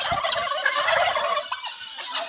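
A flock of domestic helmeted guineafowl calling together: many short calls overlapping into a continuous chatter.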